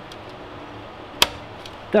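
A single sharp click about a second in: the retaining latch of a CPU heatsink on an HP ProLiant DL580 G7 processor board snapping locked into place.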